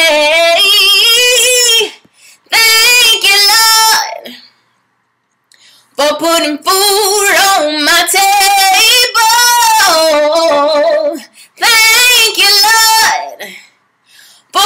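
A woman singing a gospel song unaccompanied, in long held notes with vibrato, phrase by phrase with short breaths between and a silent pause of about a second and a half around the middle.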